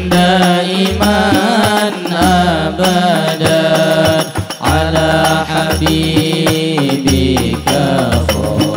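Hadroh ensemble performing Islamic sholawat: male voices singing together in a wavering, ornamented melody over the steady beat of rebana frame drums.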